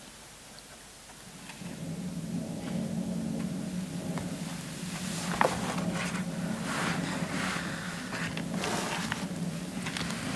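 A low, steady rumbling drone from the live stage music fades in about a second and a half in and holds, with hazy, hissing swells and a few faint clicks above it.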